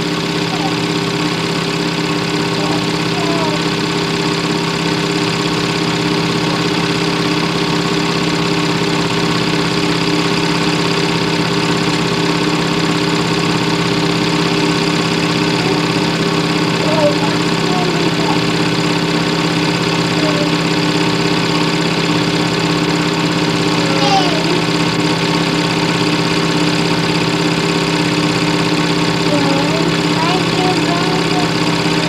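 A steady mechanical hum at one unchanging pitch, with no revving or passing swells, overlaid by a few brief faint voice-like sounds.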